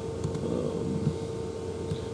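Room tone: a steady mechanical hum with a constant mid-pitched tone running under a low hiss, with a few faint ticks in the first half.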